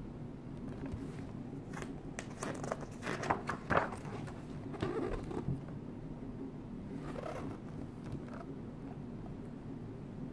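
Pages of a large hardcover art book being turned and handled: a cluster of short paper rustles and clicks from about two to five seconds in, and a softer rustle near eight seconds, over a steady low room hum.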